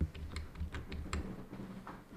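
Quiet clicking of a computer keyboard or mouse, a scattered string of short taps. Under the first second or so runs a faint low pulsing that fits stifled laughter.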